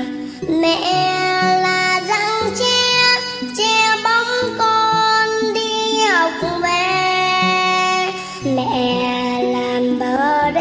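A six-year-old girl singing a Vietnamese song in held, gliding notes over musical backing.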